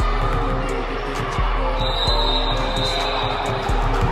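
Music with a steady bass line plays over basketballs bouncing on a hardwood gym floor, heard as many short sharp thuds. A high, thin steady tone sounds for about a second and a half midway.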